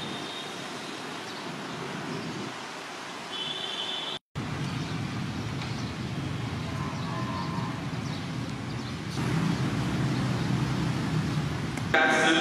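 Steady outdoor background noise, a low hum of distant traffic with some wind on the microphone, broken by a brief moment of silence about four seconds in.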